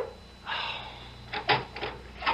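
Radio-drama sound effect of an apartment door being unlatched and opened a crack on its security chain: a short rattle about half a second in, then a few sharp clicks as the chain catches.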